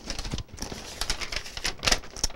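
A hand rummaging among folded paper slips inside a cardboard box, with quick crackles of paper and card, loudest near the end as a slip is drawn out.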